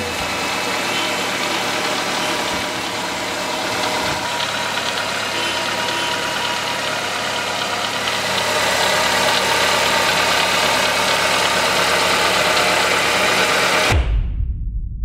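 Nissan Tsuru GSII's 1.6-litre four-cylinder engine idling steadily, a little louder in the second half.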